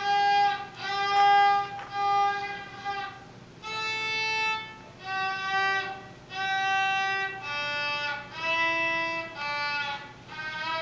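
A beginner child playing the violin, only a month into learning: a simple tune in slow, separate bowed notes, each about a second long with short breaks between them, the pitch stepping up and down from note to note.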